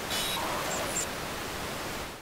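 Record-label audio logo sting: a steady hiss-like noise with a couple of short high chirps just under a second in, a quieter echo of the louder hit just before it.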